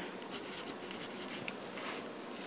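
Livescribe smartpen writing on paper: faint, irregular scratching strokes of the pen tip as words are written out.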